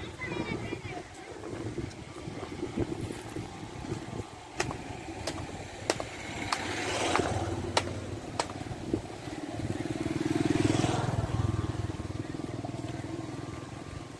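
A motor vehicle's engine grows louder and fades away twice, about six seconds in and again around ten seconds, over a few sharp clicks.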